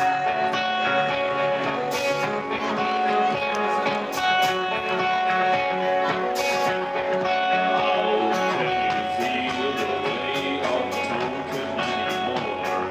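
Live psychedelic rock band playing, led by held electric guitar chords with sparse sharp hits; about two-thirds of the way through, the beat gets busier and the low end fills in.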